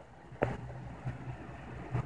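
A single sharp knock about half a second in, then a low steady hum with faint rustling: handling noise from the moving recording device over the drone of running aquarium equipment.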